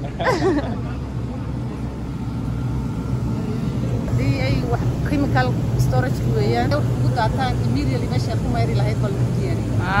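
A woman speaking over a steady low hum, with a short laugh at the start.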